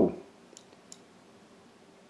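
A few faint, quick computer mouse clicks about half a second to a second in, working the on-screen PTZ zoom control of a security DVR.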